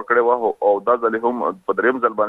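A man speaking Pashto over a telephone line, his voice thin and cut off above the upper tones.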